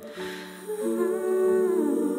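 A woman humming a wordless vocal line over held digital piano chords, with a short breath in just before her voice comes in, about a second in.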